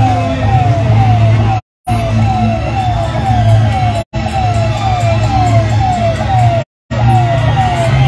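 An electronic siren wailing in quick falling sweeps, about two a second, over a low steady engine drone. The sound cuts out completely for a moment three times.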